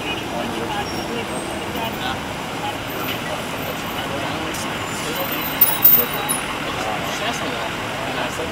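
Steady city street traffic noise with faint talk from people nearby, and a few sharp clicks about six seconds in.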